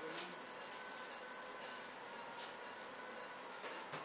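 Phacoemulsification machine clicking faintly and rapidly, about nine clicks a second, stopping about two seconds in and resuming briefly near the end: the audible feedback of pulsed ultrasound energy delivered by foot pedal while lens fragments are emulsified.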